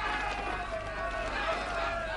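Many men yelling together in one sustained, wavering shout, as soldiers charging with bayonets, over a low steady hum.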